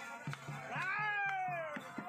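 Live folk dance music: steady drum strokes under a high, wavering melody line that swoops up about halfway through, then slides slowly down.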